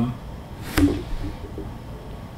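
A pause in a man's speech: the tail of an 'um', then a single sharp click about three-quarters of a second in, followed by a brief low murmur, with quiet room noise between.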